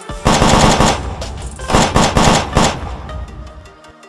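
Two bursts of automatic rifle fire, a sound effect: each is a rapid string of shots. The second burst starts about a second and a half in, and the fire tails off near the end.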